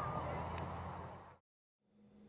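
Faint outdoor field ambience with a low rumble, fading slowly and then cutting off abruptly to dead silence about one and a half seconds in. Faint room tone follows near the end.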